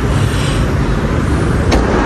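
Steady, fairly loud low background rumble with a light click near the end.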